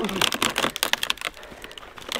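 A quick run of dry crackles and crunches, densest in the first second with a short burst again near the end, as a rotten dead log is shifted and settled and feet move in dry leaf litter.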